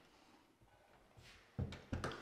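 Near silence with faint room tone, then two dull thumps near the end.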